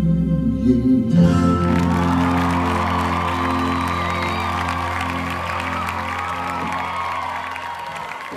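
A pop song's backing track ends on a held chord as a male singer's last note stops about a second in; audience applause and cheering follow and fade away with the chord.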